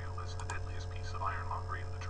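Audiobook narration played back sped up to 1.2 times, the words indistinct, over a steady electrical hum.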